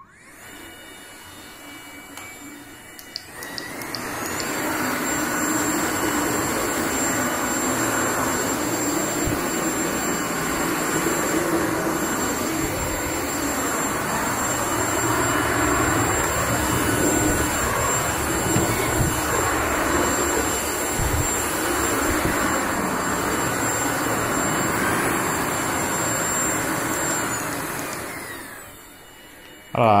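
Vorwerk Kobold VK7 cordless stick vacuum running across a hard floor. It is quieter for the first few seconds, then makes a steady suction noise with a thin high whine from about four seconds in, winding down shortly before the end.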